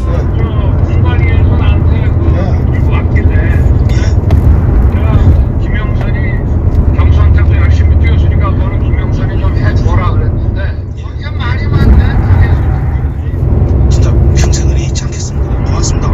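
Recorded telephone call: two men talking, the voices muffled and of poor quality, over a heavy low rumble of background noise.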